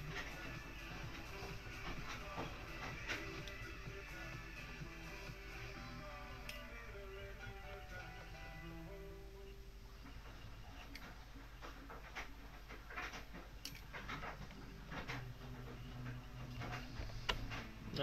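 Faint background music with a stepping melody, with a few light clicks scattered through it.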